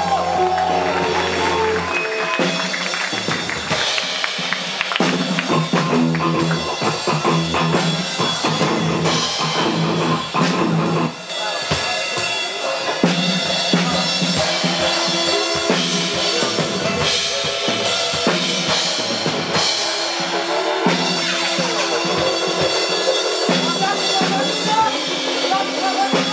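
A live rock band playing: drum kit with kick and snare hits under electric guitars and keyboard, loud and continuous.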